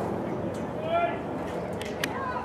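A distant voice calls out briefly about a second in, over a steady bed of outdoor background noise.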